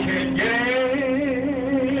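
A man singing a gospel song into a microphone, holding one long note with a wavering vibrato from about half a second in, over guitar accompaniment. A short click comes just before the note starts.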